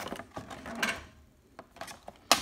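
Cardboard toy box and clear plastic blister tray being handled as the package is worked open: a few short clicks and scrapes, with a brief lull a little past the middle.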